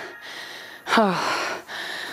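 A woman breathing hard from exertion at the end of an interval set, with a breathy, falling "oh" about a second in.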